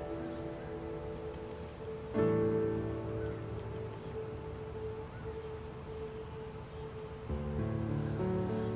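Background piano music: slow, sustained chords that fade away after each is struck, with a new chord about two seconds in and another near the end.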